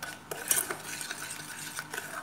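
A metal spoon stirring and scraping around a stainless steel pot of thin orange-juice and semolina mixture as it heats toward the boil, with irregular clinks against the pot, the sharpest about half a second in.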